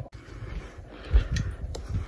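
Handling noise: soft low thumps and faint rustling as the phone camera is picked up and set in place.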